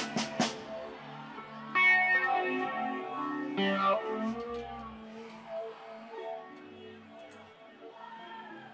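A live rock band playing its closing bars, with electric guitars to the fore. A couple of cymbal crashes come right at the start, chords are struck about two seconds in and again near four seconds, and the ringing notes then fade slowly away.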